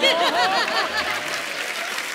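Studio audience applauding, with a voice rising over the clapping in the first second; the clapping then runs on evenly.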